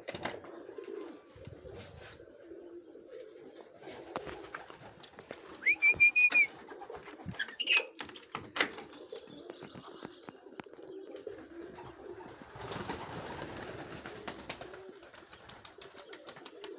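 Domestic pigeons cooing steadily throughout. A short high squeak comes about six seconds in and is the loudest sound. Sharp metallic clicks of a spring-loaded barrel bolt being slid on the aviary door follow around eight seconds in, and a brief rush of noise comes near the end.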